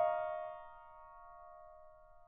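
Solo piano: a soft high chord, struck just before, rings and dies away over the first half-second or so, then hangs on faintly.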